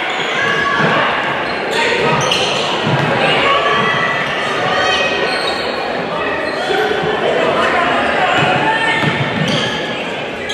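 Live basketball game in a gym: many voices of players and crowd calling out at once, with a ball bouncing on the hardwood court.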